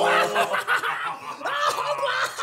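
A man snickering and chuckling: a string of short laughs that rise and fall in pitch.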